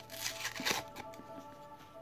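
Compacted cornstarch crunching as it is eaten, a dry crackly burst in the first second that then thins to a few light crackles, over faint background music.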